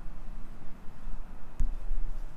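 Low rumbling handling noise on a GoPro's microphone as the camera is swung about, with a single knock a little past halfway.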